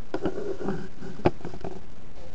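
Handling noise from a camera being moved and set in place: rubbing and scraping with a few sharp knocks, the loudest a little past the middle.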